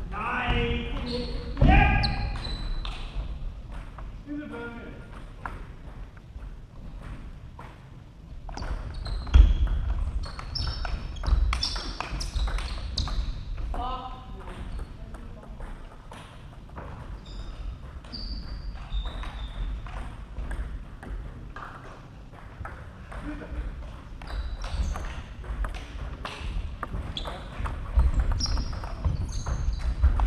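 Table tennis hall between points: voices calling out, the loudest a rising call about a second in, over scattered sharp clicks of balls on tables and bats, echoing in the large hall.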